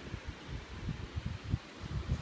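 Wind buffeting a phone microphone in irregular low rumbling gusts.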